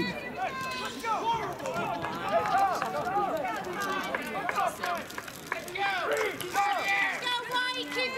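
People talking near the microphone, the words indistinct, in an open-air sports setting.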